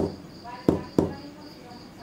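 Fingertip knocks on a small loudspeaker that serves as the knock sensor of an Arduino secret-knock lock: one knock, then a quick pair about a second in, tapping out the secret knock code. Each knock is sharp and short with a brief ring.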